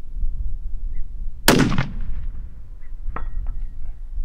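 A single rifle shot from a 6.5 PRC bolt-action rifle fitted with a muzzle brake: one sharp crack about a second and a half in, with a short echoing tail.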